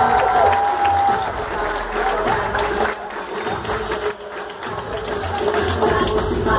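Theatre audience cheering and applauding, with high whooping shouts in the first second or so that die down toward the middle. Music with a beat comes in near the end.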